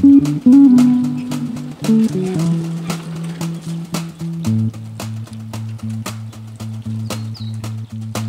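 Outro music with a steady beat, its notes moving for the first half, then settling on a long held low chord about halfway through.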